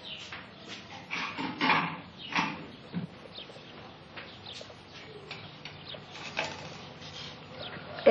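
China bowls and spoons clinking and knocking on a table as it is set and food is ladled out: a string of short clinks, with a few louder short sounds between one and two and a half seconds in.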